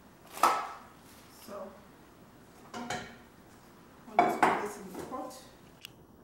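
Stainless steel cooking pot and lid clanking as they are handled and set down: about five separate metallic knocks with a brief ring, the loudest about half a second in and a double knock just after four seconds.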